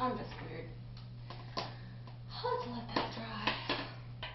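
A young woman's brief voice sounds without clear words, with a few sharp clicks and knocks of something being handled, over a steady low hum.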